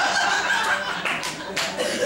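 Audience applause, many hands clapping at once, with a man talking over it.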